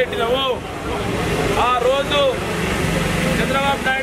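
A man's raised voice addressing a crowd in drawn-out phrases that rise and fall, over a low steady rumble.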